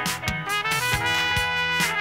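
Live band music: held trumpet notes over drums struck about three times a second, with electric guitar.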